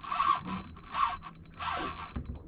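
Fishing reel being cranked against a heavy hooked fish, giving a rasping scrape with each turn of the handle: three strokes about two-thirds of a second apart.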